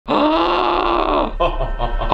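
A man's long drawn-out vocal groan, held at one pitch for about a second, then a few short voiced sounds.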